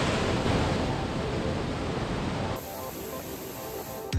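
Steady rush of a mountain waterfall cascading over boulders, heard close up. About two-thirds of the way through it drops suddenly to a quieter rush of the same falls.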